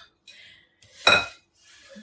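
A ladle clinking against a glass mixing bowl of pancake batter: one loud ringing clink about a second in, with fainter scraping before and after it.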